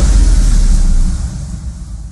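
A loud, deep, noisy rumble of an end-card sound effect, fading away over the second half.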